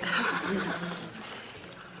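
A person's laugh, strongest in the first second and then trailing away.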